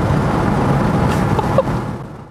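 Steady road and tyre noise inside the cabin of a 1969 Porsche 911 converted to electric drive, fading out near the end.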